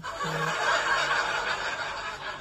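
A man laughing under his breath: a brief voiced note at the start, then about a second and a half of airy, breathy laughter.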